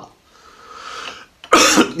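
A man's breath drawn in, growing louder over about a second, then one short cough just before he speaks again.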